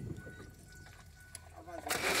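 A low-level pause with the engine not running: a faint steady high-pitched tone for about a second, then a brief spoken sound near the end.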